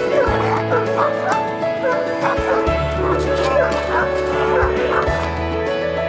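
Caucasian shepherd dog barking repeatedly in protection training, a guard-instinct aggression display at a decoy, over steady background music. The barks thin out near the end while the music carries on.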